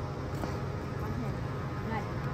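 Steady low outdoor hum with a faint, distant voice or two over it.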